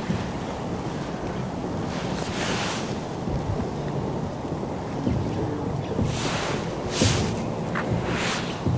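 Wind buffeting the microphone: a steady low rumble with a few brief hissing gusts, the strongest about seven seconds in.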